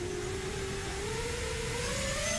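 Racing quadcopter's 2205-size brushless motors spinning 5-inch tri-blade propellers at low throttle on the ground, a steady whine whose pitch creeps slowly upward toward the end.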